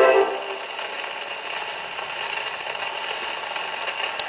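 Shellac 78 rpm record on a portable acoustic gramophone: the orchestra's final chord dies away in the first half-second. Then the needle runs on in the groove with steady surface hiss and crackle.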